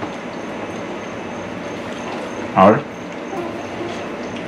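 Steady rushing background noise in a room, with one brief vocal sound, a single word or murmur, about two and a half seconds in.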